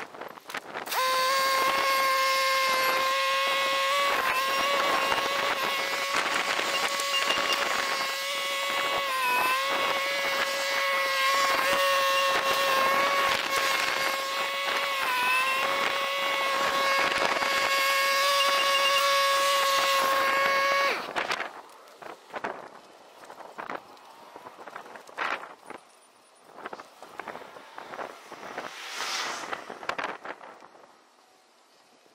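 Kubota compact tractor with front loader running with a steady high whine, its pitch dipping briefly twice as it takes load, then cutting off suddenly about two-thirds of the way through. Scattered knocks and rustles follow.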